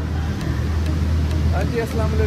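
A steady low hum under a noisy background, with voices starting up about a second and a half in.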